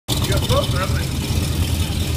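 1973 Corvette Mako's V8 engine idling steadily, with a low rumble, while the car is slowly backed up.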